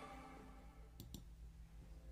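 Near silence: faint room hum with two quick, faint clicks close together about a second in.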